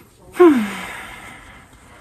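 A woman's audible sigh about half a second in: a breathy exhale with her voice sliding down in pitch, fading away over about a second.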